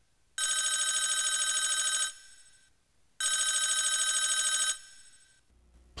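A telephone ringing twice, each ring about a second and a half long with a fast warble, a short pause between the rings.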